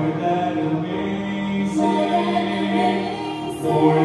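A man and a woman singing a gospel duet through hand-held microphones, holding long notes.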